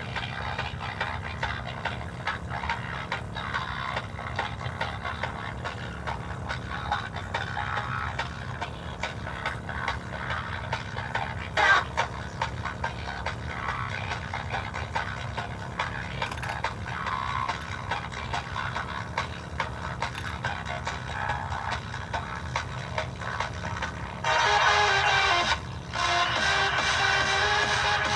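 Music playing through a bare Dayton Audio speaker driver whose cone is covered in red tape. It gets louder about three-quarters of the way through, drops out briefly, then comes back.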